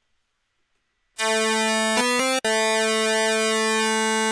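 Propellerhead Reason's Subtractor software synthesizer holding a bright, buzzy note on waveform 8, with phase offset modulation in subtraction mode. The note starts about a second in. Around the middle its tone shifts briefly and it is struck again, then it holds steady.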